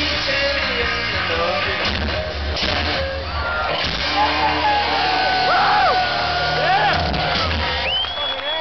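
Live rock band playing through a stadium PA, heard from within the crowd. Fans whoop and yell over the music in the second half, and the bass drops out near the end as the song closes.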